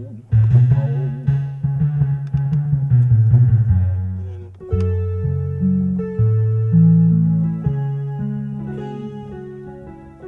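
A walking bass line played on a keyboard, low notes stepping from pitch to pitch. Quick and busy at first; from about halfway, held notes change roughly once a second under a sustained chord.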